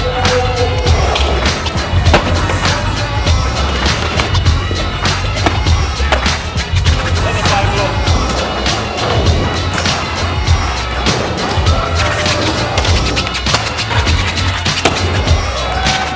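Skateboard on a hard park surface, with wheels rolling and sharp clacks from pops and landings, over a music track with a heavy, pulsing bass line.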